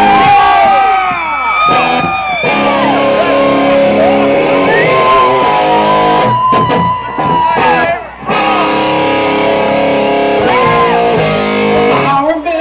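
Electric guitar played live through an amplifier, a slow intro of held notes that are bent up and down and slid, with short breaks about six and a half and eight seconds in.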